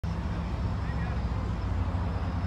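Hot-rodded 1930s coupe's engine idling, a steady low, rapid pulsing from its exhaust.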